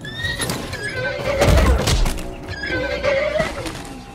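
A spooked horse neighing twice, with a heavy thud and hoof noise between the calls as it goes down, over film score music.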